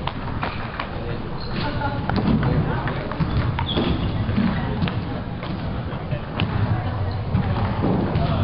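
Table tennis ball clicking off paddles and the table in a rally, sharp ticks at an uneven pace, over a steady murmur of voices in a large, echoing gym.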